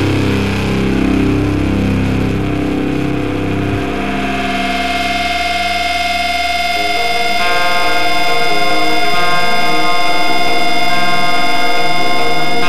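Heavy rock band recording: distorted guitar and bass, then about four seconds in the low end drops away and a single held guitar tone rings on, with more sustained ringing notes joining about halfway through.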